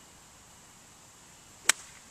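A 60-degree lob wedge striking a golf ball off turf on a half swing: one sharp click near the end.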